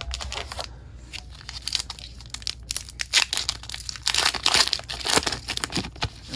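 Foil booster pack wrapper crinkling as it is drawn from the box and torn open: a run of crackly rustling and tearing that grows louder in the second half.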